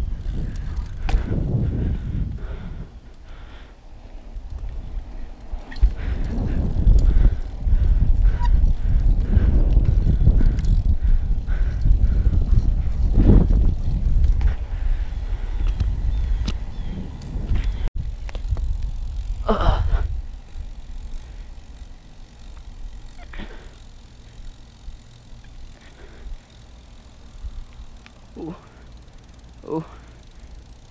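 Wind rumbling on the action camera's microphone and tyres rolling on asphalt as a BMX-style bike is ridden, the rumble strongest in the middle and quieter in the last third. A few short calls cut through, the loudest about two-thirds of the way in.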